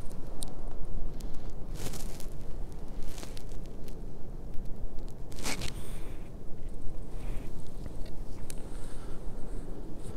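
Camouflage clothing rustling and scraping against a clip-on microphone as the wearer turns in a tree stand: several brief rustles, the loudest about five and a half seconds in, over a steady low rumble.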